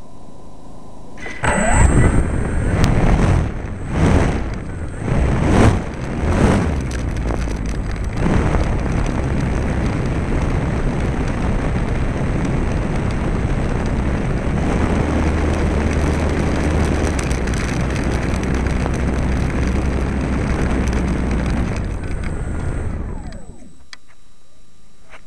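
A model Su-26 aeroplane's engine starts about a second and a half in and revs up in several short surges. It then runs steadily, and dies away near the end.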